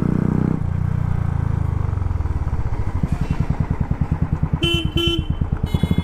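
Royal Enfield Classic 350 single-cylinder engine running at low revs in traffic, its exhaust settling into an even, quick thumping beat. A vehicle horn honks twice near the end.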